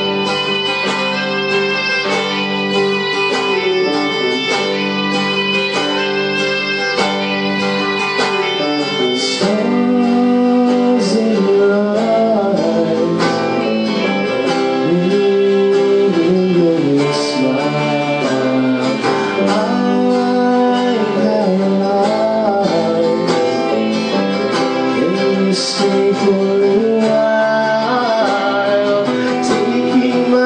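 Live band music in three-four time: a strummed acoustic-electric guitar under a bowed violin playing a sliding, sustained melody.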